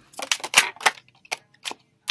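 A run of sharp clicks and knocks, several close together in the first second, then two more spaced apart.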